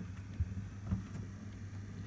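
Low steady hum with a couple of faint low bumps about half a second and a second in: handling noise from a hand-held camera being moved.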